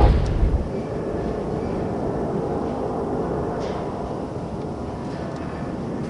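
Sound-effect rumble under a title card: the dying end of a heavy boom in the first half-second, then a steady low rumbling drone that slowly fades.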